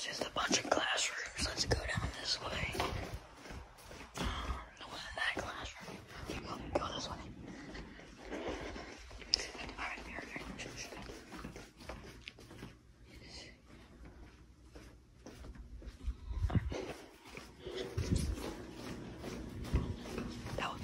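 People whispering to each other while walking, the whispers coming in short broken phrases through the first half and then dying down. A few low thumps follow near the end.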